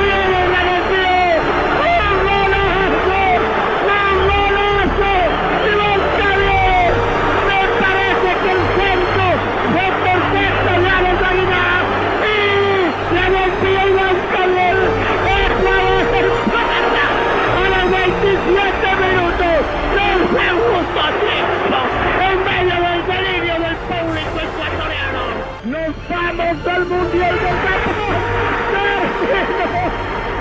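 Singing voices over music, loud and continuous, with a brief dip in level near the end.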